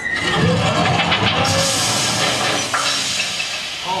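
Sound effect of a machine's motor starting up and running, joined about a second and a half in by a strong hiss as steam puffs out of it: the sign that the motor is coming loose.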